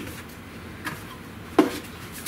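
A cardboard box being picked up and handled, with a faint tick and then one sharp knock about one and a half seconds in.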